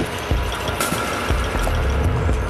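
Live experimental electronic and percussion music: a dense, irregular clicking and rattling texture over repeated low bass pulses, with a sharp strike a little under a second in.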